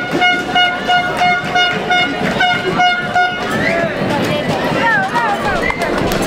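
A horn toots a quick run of short notes on one pitch, about three a second, for roughly three seconds. After that, high-pitched sounds warble up and down.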